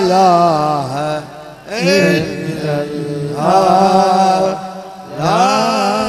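A man's voice chanting a Sufi dhikr in long, wavering melodic phrases, three phrases with short breaths between them.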